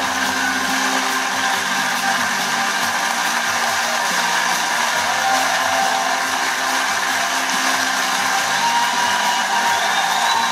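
Sustained audience applause, steady and unbroken, heard through a television's speaker.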